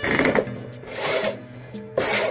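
Hand push reel mower being rolled, its cutting reel spinning with a rapid whirring clatter in two short bursts, at the start and about a second in.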